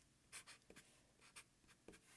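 Faint writing strokes of a Sharpie felt-tip marker on paper: a few short, scattered scratches as letters are written.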